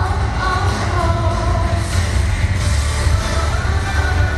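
A woman singing into a handheld microphone over a pop backing track with a heavy, steady bass beat, all played loud through a PA system.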